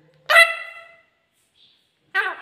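Pet parakeet giving one loud, ringing call, starting about a quarter second in and fading out within a second.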